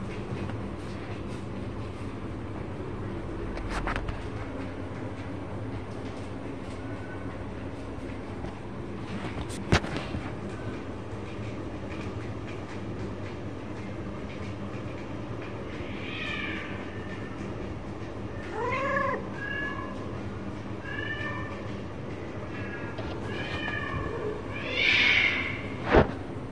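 Domestic cats meowing: short rising-and-falling calls repeating from about two-thirds of the way in, the loudest near the end. A single sharp click sounds about ten seconds in, over a steady low hum.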